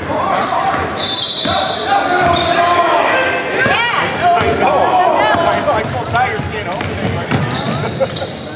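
Basketball being dribbled on a hardwood gym floor, with sneakers squeaking as players cut and drive. Voices call out over it, and the sound echoes in the large hall.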